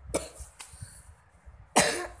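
A person coughing: one short, loud cough near the end, with a fainter sharp sound just after the start.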